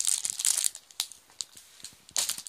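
The plastic wrapping of a pack of A4 cardstock crinkling as the pack is handled and lifted aside, loudest in the first moments, then a few light ticks.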